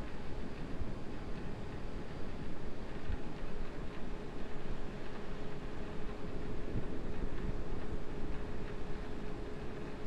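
Steady launch-pad noise around a fully fuelled Falcon 9 rocket in its final countdown, with a low rumble, wind on the microphone and a faint steady hum.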